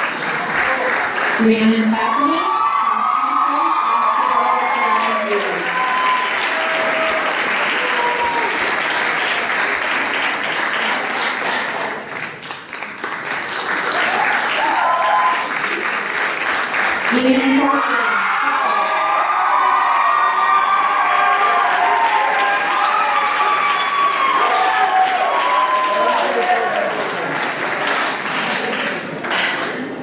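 Audience applauding, with voices calling out over the clapping. The applause dips briefly about twelve seconds in, then swells again with more calling out.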